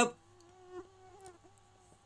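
A faint, thin buzzing whine that wavers slightly in pitch and stops just before the end.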